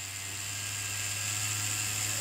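Cheyenne Thunder rotary tattoo machine running steadily at maximum stroke on about 8 volts, its motor whine growing slightly louder as the supply voltage is raised from about 7.7 to 8 volts. It runs at this low voltage through a homemade test cable, where the original Cheyenne adapter cable would not start it below 10 volts.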